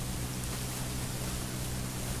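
Steady hiss with a low, even electrical hum: the noise floor of a handheld microphone and its amplification.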